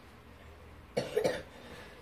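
A cough: two quick, sharp bursts about a second in, then fading.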